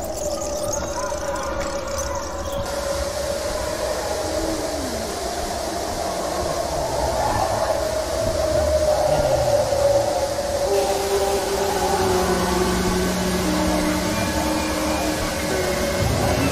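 Soft background music of long held notes that change pitch in steps, over the steady rush of a waterfall.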